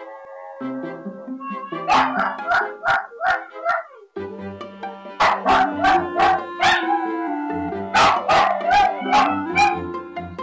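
Toy poodles barking in three quick runs of four or five high barks each, mixed with howl-like cries, calling for their absent owners. Background music plays underneath.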